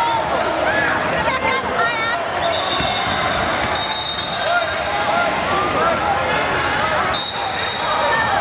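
A basketball bouncing on a hardwood gym floor during youth play, with sneakers squeaking, voices around the court and the echo of a large hall. A couple of long, high-pitched tones sound in the middle and again near the end.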